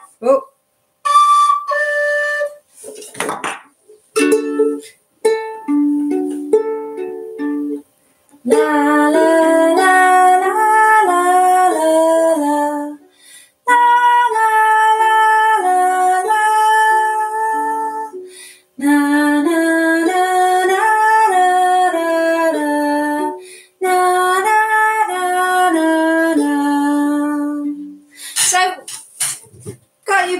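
A few notes on a recorder-type whistle and single ukulele notes, then a Makala ukulele playing a slow, gentle lullaby melody in four phrases of about four seconds each, with a higher held melody line over the plucked notes.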